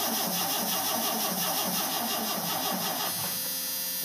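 Starter cranking a V6 truck engine in a steady rhythm of about four to five compression beats a second, the engine not catching because the tank has run dry. The cranking stops about three seconds in, leaving a steady hum.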